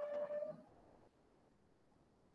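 A single short pitched sound, about half a second long, holding one steady note, followed by a faint quiet background.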